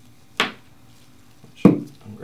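Two sharp knocks about a second and a quarter apart, the second louder and deeper: a small bottle and its cap being set down on a wooden worktable.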